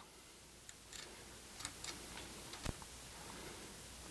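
Faint, scattered small clicks and light handling of metal parts as a sewing machine's rotary hook and its retaining ring are fitted together by hand, with one sharper click a little past halfway.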